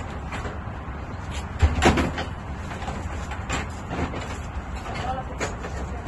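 Knocks and clatter of items being handled at an open van, the loudest pair about two seconds in, over a steady low rumble.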